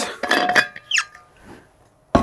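Metal clinks and knocks from a stainless-steel vacuum flask being handled and set down on a bench, with a brief ringing in the first half second and a short squeak about a second in.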